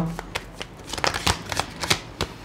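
A tarot deck being shuffled and handled by hand: a string of soft, irregular card flicks and taps.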